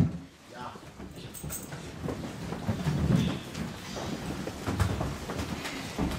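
Paper rustling and handling noises as a Bible is opened and leafed through to a passage, with a sharp knock at the very start.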